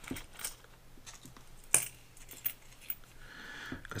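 Loose pre-1965 90% silver US coins (dimes, quarters and half dollars) clinking against each other as they are handled out of a small plastic bag: a few scattered sharp clicks, the loudest a little under two seconds in.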